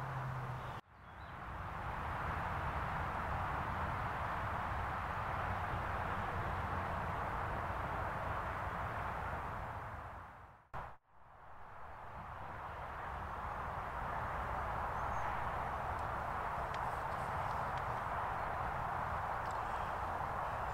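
Steady outdoor background noise by a lake, an even rushing hiss with no clear single source. It cuts out briefly about a second in and again about halfway through, each time swelling back up.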